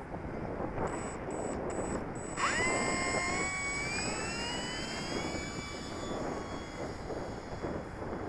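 Electric motor and propeller of a Dynam F4U Corsair RC warbird opening up for takeoff. The whine starts suddenly about two and a half seconds in, climbs in pitch as the plane accelerates down the strip, then holds and fades as it flies off.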